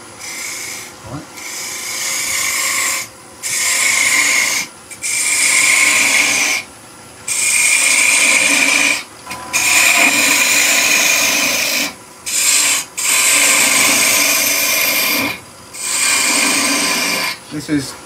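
Small bowl gouge cutting a spinning-top blank on a running wood lathe: about eight cuts of one to two seconds each, with short breaks as the tool is lifted off the wood, over the steady hum of the lathe.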